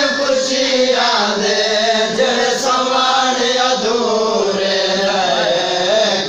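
Men's voices chanting a noha, a Shia mourning lament, in continuous melodic lines that slide up and down in pitch.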